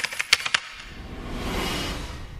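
A quick run of about six sharp clicks, then a soft whooshing swell that rises and falls, as in an edited transition into background music.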